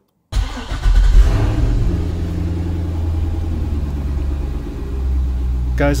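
C6 Corvette's LS2 6.0-litre V8 starting from cold: it catches, flares in revs about a second in, then settles to a steady idle around 880 rpm. This is the first start on the new tune with the LS7-style air intake and MAF sensor.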